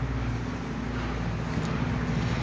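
A steady low motor hum over a constant haze of background noise.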